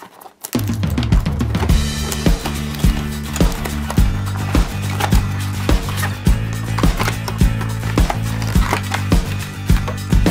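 Background music with a steady beat and a sustained bass line, starting suddenly about half a second in.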